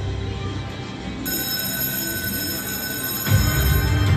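Video slot machine game music and sound effects. A steady, bell-like electronic ringing starts about a second in and holds over the music, and the heavy bass beat comes back near the end.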